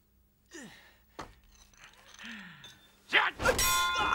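A man's strained, falling groans, then from about three seconds in a loud whoosh and a ringing metal clang that keeps sounding past the end: fight sound effects.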